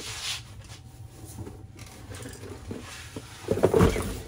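Handling noise from the plastic Flowbee hair clipper and its spacer attachments being picked up: a brief rustle, light clicks and scrapes, then a cluster of louder knocks and clunks near the end.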